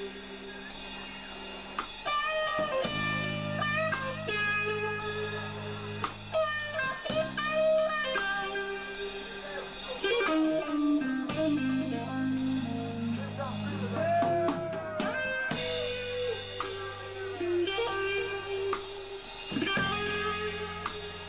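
Live psychedelic rock band playing: electric guitar over drums and bass, with held notes that bend and slide in pitch, and a steady run of cymbal and drum hits.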